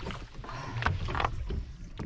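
Hooked grouper splashing at the surface beside a fibreglass boat hull, with several short splashes over water lapping against the hull.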